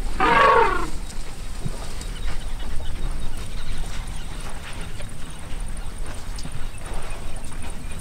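An African elephant trumpets once at the very start, a call of under a second. Low steady background noise follows.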